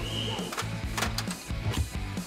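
Background music with a steady low pulse.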